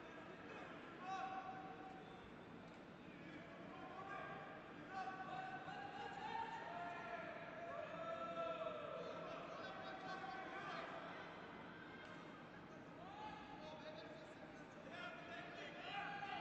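Faint voices in a large sports hall: scattered shouts and talk from around the arena, heard at a distance with no loud impacts.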